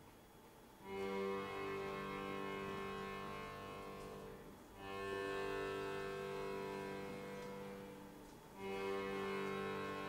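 Quiet orchestral music from an opera: three sustained chords, each entering about four seconds after the last, held steady and then fading.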